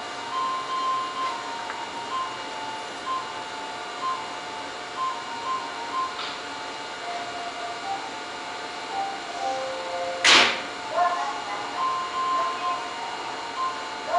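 A simple electronic chime melody of short separate notes plays throughout. About ten seconds in, a short sharp hiss is the loudest sound.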